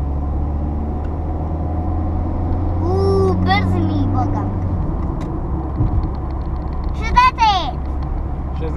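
Steady low rumble of a car's engine and tyres heard from inside the cabin while driving. A child's voice sounds about three seconds in, and a short high squeal with falling pitch comes near the end.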